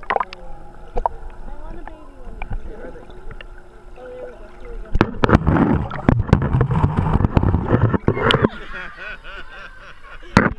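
Muffled underwater sound from a camera held submerged in a pool: gurgling and water noise, with a loud stretch of sloshing and rumbling about halfway through as the camera is moved under the water.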